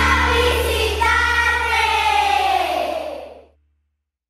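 The end of a jingle: children's voices singing a long final note over music with a held bass note, fading out about three and a half seconds in.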